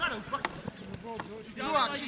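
Footballers shouting on the pitch during play: a loud shout near the end, with a few short knocks in between.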